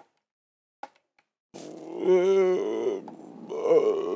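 A man's wordless groaning vocal sound starts about a second and a half in and lasts about a second and a half. A second, shorter groan follows near the end.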